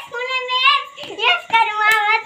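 A child singing a drawn-out, sing-song line: one held, wavering note for about the first second, then a second held note in the last half second. A single sharp click sounds near the end.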